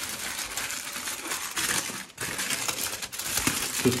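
Crumpled aluminium foil crinkling and crackling as hands unfold it from around a package.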